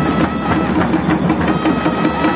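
Tamil folk ensemble playing: dense, fast drumming on barrel drums and stick-beaten frame drums under a nadaswaram holding a high, steady note.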